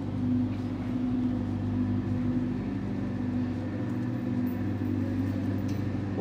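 A steady low mechanical hum, a motor or engine running evenly, with no distinct events.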